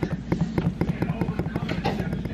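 Child's pull wagon rolling across a hard floor, its wheels and body rattling in rapid, irregular clicks over a low rumble.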